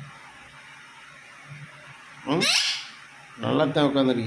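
Rose-ringed parakeet giving one short, harsh screech about halfway in, with quick rising sweeps. A voice speaks near the end.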